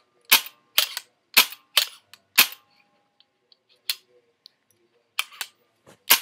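CCM T2 pump-action paintball marker being worked by hand: a run of sharp metallic clacks as the short-stroke pump handle is slid back and forth, about six in the first two and a half seconds. After a few faint ticks, there is one more clack near the middle and two close together near the end.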